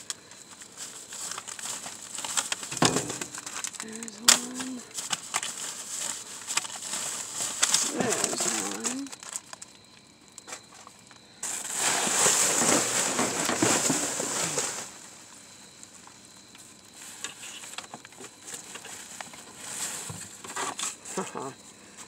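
Plastic bags and bubble-wrap packaging crinkling and rustling as they are rummaged through by hand, with a single sharp click a few seconds in and a louder stretch of rustling for about three seconds just past halfway.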